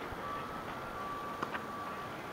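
A single faint, distant crack of a tennis racquet striking the ball about one and a half seconds in, over a thin high steady tone that comes and goes in the background.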